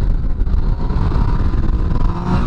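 Yamaha FZ-09's inline three-cylinder engine running under throttle through a wheelie, mixed with heavy wind rush on the rider's microphone.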